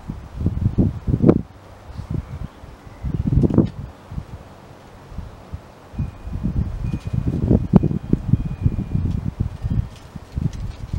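Wind buffeting the microphone in irregular low gusts, with a longer, busier spell of gusting in the second half.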